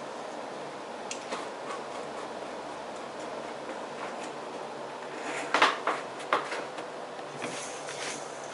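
Kitchen handling sounds as a crumb crust is packed into a metal springform pan from a stainless steel bowl: a few light knocks, and a short clatter of the bowl and pan about five and a half seconds in, over a steady background hum.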